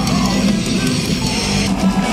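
Live heavy metal band playing loud, with electric guitars, recorded from inside the crowd on a phone.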